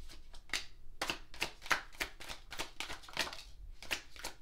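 A deck of tarot cards being shuffled by hand: a quick, irregular run of short crisp card slaps, several a second.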